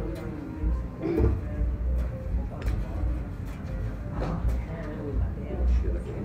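Lull between songs at a small live gig: an uneven low rumble from the stage, with faint crowd chatter and scattered clicks over it.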